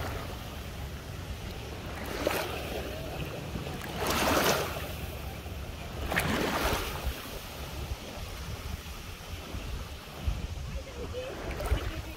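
Shallow lake water lapping and sloshing at the shoreline, with wind rumbling on the microphone. Three louder washes of water come about two, four and six seconds in, the one at about four seconds the loudest.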